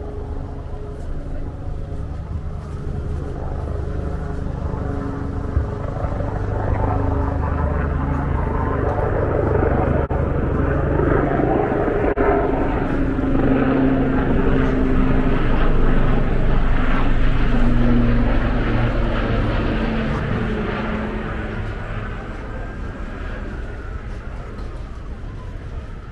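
Street traffic with a low engine drone that grows louder for about sixteen seconds and then fades away.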